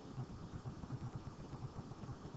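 Faint background noise of the recording: a low, irregular rumble with a light hiss and no distinct events.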